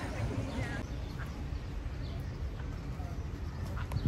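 Quiet outdoor background: a steady low rumble with faint, short distant calls over it.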